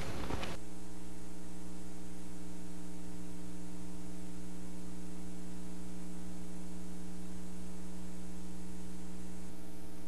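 Steady electrical mains hum, a low buzz with evenly spaced overtones, with no other sound heard.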